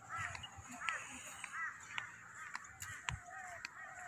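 Birds calling over and over in short, arched chirps, with footsteps on a paved path.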